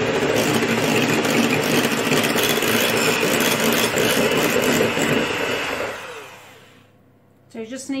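Electric hand mixer with twin metal beaters whipping double cream in a glass bowl, running at a steady speed. It is switched off about five and a half seconds in and winds down over about a second.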